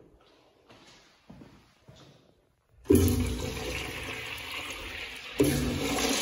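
Urinal flush valves flushing: after a few faint shuffles, a loud rush of water starts suddenly about three seconds in and slowly eases. A second flush surges in about two and a half seconds later.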